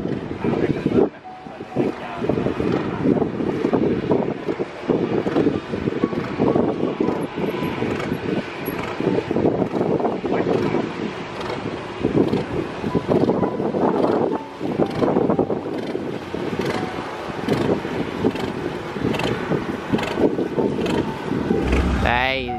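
Wind buffeting the microphone in uneven gusts, over the engine of a passenger speedboat coming in to the pier.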